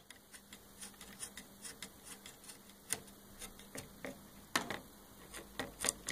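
Faint, irregular small clicks and taps of hands working a coax connector to disconnect the receiving antenna from a homemade VHF receiver board. A few louder clicks come in the last couple of seconds.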